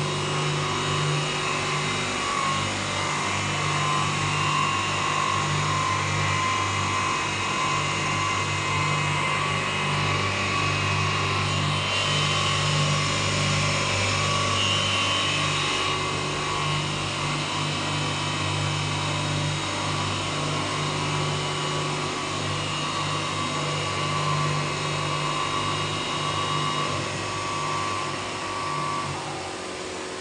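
The three spindle motors of a semi-automatic glass edging and beveling machine run steadily with their diamond wheels: a constant electric hum with a higher whine and grinding hiss over it. The hum drops away near the end.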